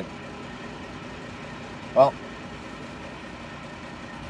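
Steady low hum of a semi truck's diesel engine idling, heard from inside the cab, with one short spoken word about halfway through.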